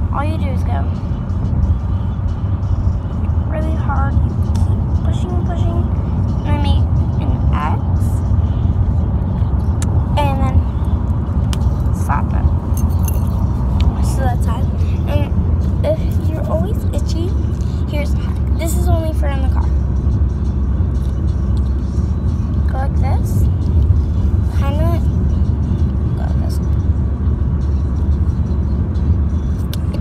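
Steady low rumble inside a car's cabin, from the engine and road, with brief faint voice-like sounds scattered over it.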